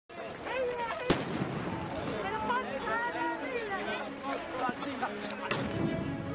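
Voices with two sharp bangs, one about a second in and one near the end.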